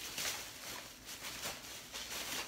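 Thin plastic shopping bag rustling and crinkling as a hand digs into it and pulls items out, in irregular crackly bursts.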